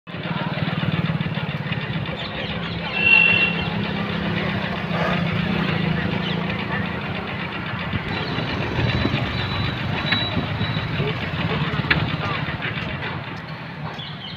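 Street traffic: motorcycle and car engines running and passing, under indistinct voices. A short high tone sounds about three seconds in.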